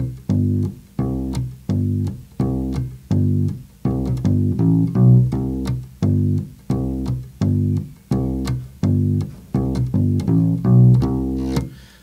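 Solo electric bass guitar playing a simple country bass line in C. It steps between the root and the fifth (C and G) in an even rhythm of about two notes a second, with a quick walk-up of notes back to the C about halfway through and again near the end.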